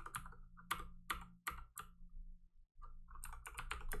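Computer keyboard typing: single keystrokes a third of a second or so apart, a short pause, then a quick run of keys near the end as a terminal command is typed and partly deleted.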